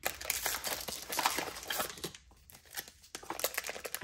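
A plastic blind-bag wrapper crinkling as hands tear it open and pull out the contents: quick crackles, a lull of about a second past the middle, then more crinkling near the end.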